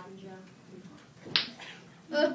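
A voice trails off at the start, then a single sharp snap-like click a little past halfway through.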